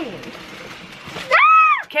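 Rustling of a cardboard boot box being opened, then a short, high-pitched excited squeal that rises and falls, about a second and a half in.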